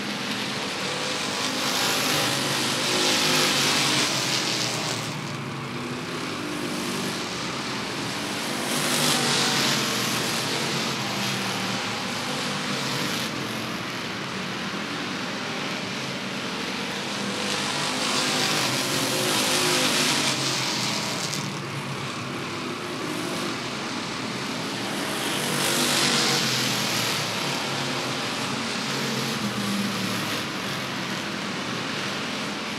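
A field of Roadrunner-class stock cars racing on a short oval, their engines running hard. The sound swells and fades about four times as the pack comes past and goes away around the track.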